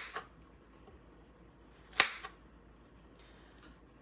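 A knife cutting a banana into chunks on a wooden board, with one sharp tap of the blade on the board about two seconds in.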